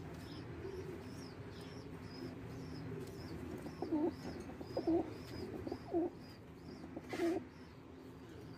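Pigeons cooing: four short low coos about a second apart in the second half, over a steady low murmur of cooing. Through it runs a thin high peep repeating about twice a second, the begging of a squab being fed crop milk. There is a brief scratchy rustle near the end.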